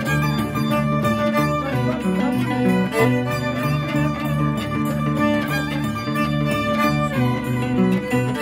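Andean harp and violin playing a tune together live, the harp's plucked bass notes stepping steadily beneath the bowed violin melody.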